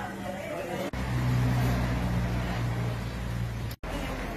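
An engine running steadily with a low hum, starting abruptly about a second in and cutting off suddenly near the end.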